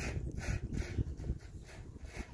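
Wind rumbling on the microphone, with a handful of short, soft rustling or smacking sounds about every third of a second, mostly in the first second.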